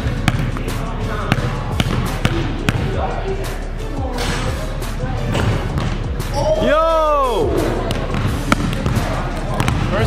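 A basketball bouncing repeatedly on a hard gym floor, short knocks spread through the whole stretch. About seven seconds in, a long voice exclamation rises and then falls in pitch.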